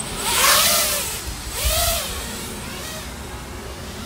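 FPV quadcopter's brushless motors and propellers revving in two quick throttle bursts, each rising then falling in pitch. They then settle into a steadier, quieter hum in flight.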